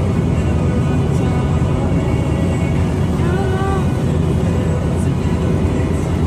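Steady road and engine noise inside a Toyota Land Cruiser 80-series cruising down a highway, with a brief voice-like sound rising and falling about three seconds in.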